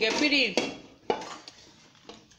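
A cartoon character's squeaky gibberish voice for about half a second, then two sharp clinks about half a second apart that fade away.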